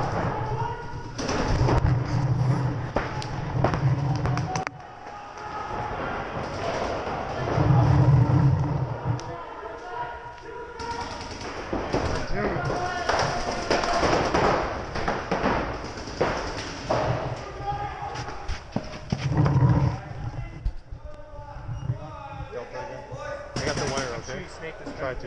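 Paintball markers firing strings of shots, with balls smacking the inflatable bunkers and heavy thumps close to the microphone.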